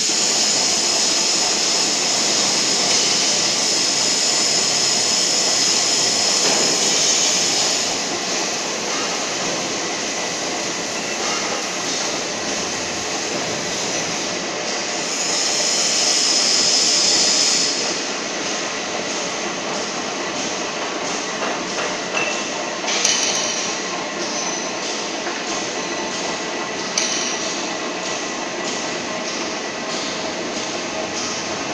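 Drive motor and gearing of a column-and-boom welding manipulator running as the boom is moved, a steady mechanical whir with a high whine. The whine stops about eight seconds in and comes back for a few seconds around the middle. A few short knocks come in the later part.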